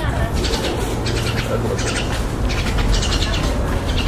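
Small birds giving short, high, rapidly chattering calls, about five times, over a steady low rumble.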